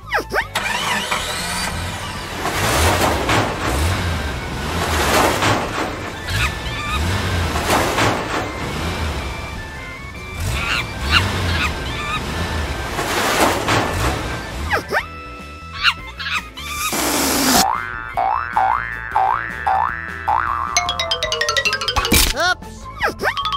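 Background music with a steady beat, overlaid with cartoon sound effects. Near the end a long falling whistle glide is followed by a quick run of springy boings.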